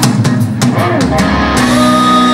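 Live rock band playing: a drum-kit fill of sharp hits in the first second, then electric guitars and the band come in on a held chord, with a high sustained note entering near the end.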